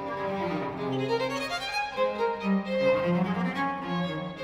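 Baroque violin and baroque cello playing a duet: the cello's low notes sound under the violin's moving melody, the notes changing every fraction of a second.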